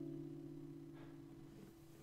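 Final chord of an acoustic guitar ringing out and fading away, dying out near the end.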